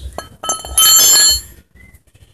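Metal striking metal with a bright, bell-like ringing that lasts about half a second and cuts off, a few clicks before it, as the oil-pan drain plug is worked loose under the car.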